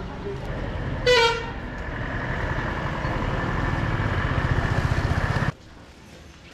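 A vehicle horn gives one short toot about a second in. Over it a motor vehicle's engine runs, growing steadily louder until the sound cuts off abruptly near the end.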